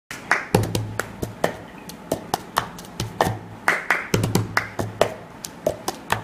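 Cup-song rhythm played on a white disposable cup and a tabletop: hand claps, taps, and the cup knocked and set down on the table, in a steady repeating pattern of sharp clicks and dull thuds.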